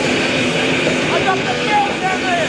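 Metal band playing live: heavily distorted guitars and drums in a loud, overloaded camcorder recording, with short sliding high notes about a second in.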